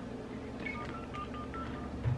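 Hotel-room desk telephone being dialled: a quick run of about six short keypad tones, starting a little after half a second in.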